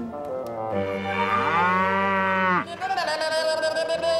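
A cow mooing: one long moo that rises and falls in pitch, starting about a second in and lasting about two seconds, followed by a steadier, higher drawn-out sound from about three seconds in.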